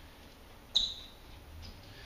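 A single short, high-pitched squeak or chirp about three quarters of a second in, sharp at the start and dying away quickly, over quiet room tone.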